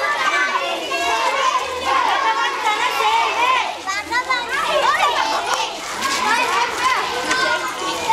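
A group of children talking and calling out at once, many high voices overlapping.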